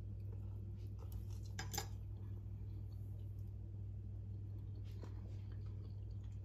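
A few light clinks of cutlery against a plate, the loudest a quick pair a little under two seconds in, over a steady low hum.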